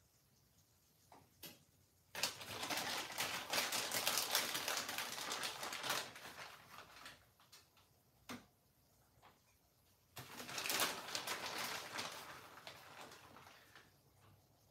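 A plastic bag being crinkled and rustled in two spells of a few seconds each, with a few light clicks and knocks between them.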